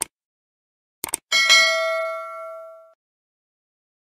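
Subscribe-button animation sound effect: a click, then a quick double click about a second in, followed by a notification-bell ding that rings out and fades over about a second and a half.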